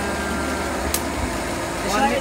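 Forge air blower's motor running with a steady low hum, with a single sharp click about a second in.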